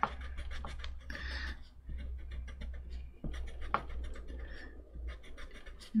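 A white block eraser scrubbing back and forth over a Baltic birch wood panel, rubbing off graphite pattern-transfer lines. It makes an irregular patter of short scratchy strokes over a low steady hum.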